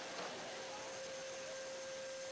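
A faint, steady single-pitched hum over a low hiss, with no voice or crowd noise heard.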